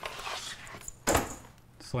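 A single sharp knock about halfway through, followed by a man starting to speak.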